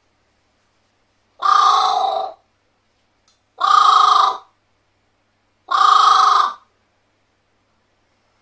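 Carrion crow cawing three times into a metal tumbler held at its beak. Each loud caw lasts about a second, with a ringing, bell-like tone from the tumbler.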